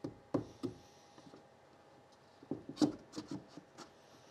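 Hands pressing and tapping a front panel down into a wooden speaker box to seat it in the glue: short wooden knocks with some rubbing, three in the first second, then a cluster of about six between two and a half and four seconds in.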